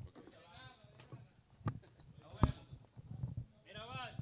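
Voices of people talking in the background, with a few scattered sharp knocks, the loudest about two and a half seconds in.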